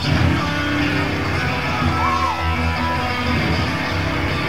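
Punk band playing live: distorted electric guitar, bass guitar and drums come in loudly all at once at the start of a song.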